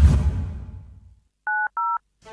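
A low sound fades out over the first second. Then, about a second and a half in, come two quick telephone touch-tone (DTMF) beeps, each a pair of steady tones, the second at a different pitch pair from the first.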